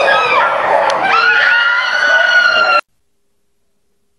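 A person screaming: long, high-pitched screams, a new one rising about a second in. The sound cuts off abruptly nearly three seconds in, into dead silence.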